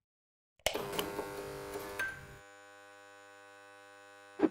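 After a brief silence, a steady electronic hum of several held tones sets in, with a few clicks in its first two seconds. About halfway through it drops to a quieter, steadier hum.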